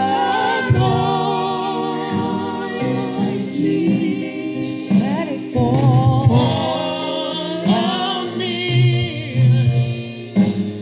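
A woman singing a gospel song into a handheld microphone, her voice gliding between long held notes.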